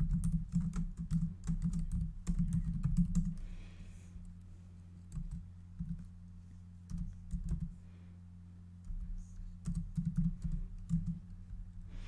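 Computer keyboard typing: quick runs of keystrokes for the first few seconds, then scattered strokes and a short run near the end, over a steady low hum.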